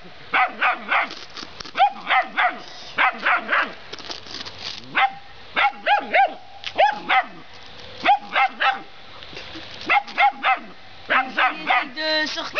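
A young dog barking high-pitched, yappy barks in quick runs of two to four, a new run about every second, with brief pauses between.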